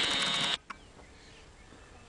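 Camcorder zoom motor whirring briefly, cutting off about half a second in, followed by a single faint click.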